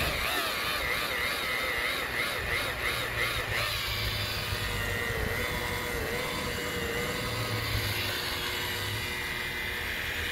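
DeWalt DWP849X rotary buffer running with a double-sided wool compounding pad on boat gelcoat, its motor whine wavering in pitch as the pad is pressed and worked over the curved hull, most over the first few seconds.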